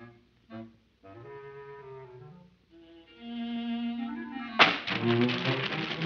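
Orchestral cartoon score with bowed strings playing short, broken phrases, then a held note. A sudden loud hit comes about four and a half seconds in and sets off busier, louder orchestral music.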